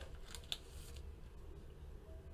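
Faint rustle of a trading card being handled, with one small sharp click about half a second in.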